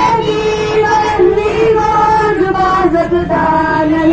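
A song sung by voices, with a melody of long, wavering held notes.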